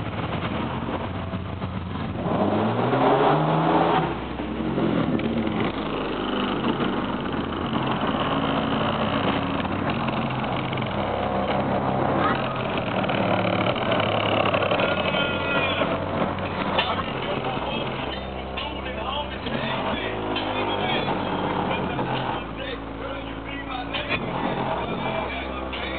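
Nissan Maxima's V6 engine revving through its exhaust, the pitch climbing steeply about two to four seconds in, then running on with further changes in pitch.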